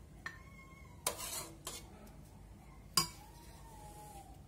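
A metal spoon clinking and scraping against a metal pressure-cooker pot and a china serving plate while serving a stew: a light clink that rings briefly near the start, a short scrape about a second in, and a sharp clink at about three seconds that rings on, slowly falling in pitch.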